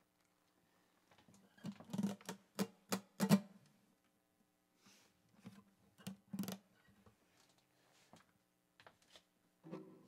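Acoustic guitar played softly and sporadically, a few scattered plucked notes and short strums with sharp attacks, clustered in two bursts, with faint strings ringing on in between.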